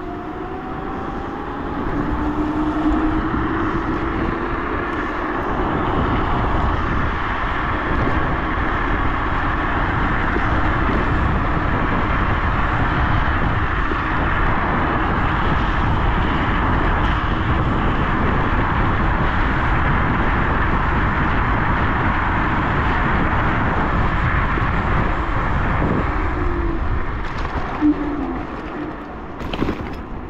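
Dualtron Thunder 3 electric scooter riding at speed: steady wind rush and road noise, with the hub motors' whine rising in pitch as it accelerates over the first few seconds. The whine returns briefly near the end, along with a short knock.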